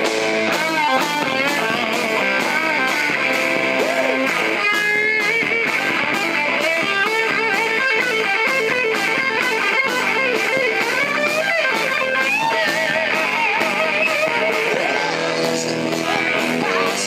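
Live rock band playing an instrumental break: electric guitar lead with bent, wavering notes over bass guitar, drums and rhythm guitar, with no singing.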